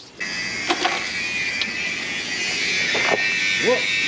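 Honda K-series four-cylinder engine started and running steadily after sitting unused for a long while with little or no oil in it.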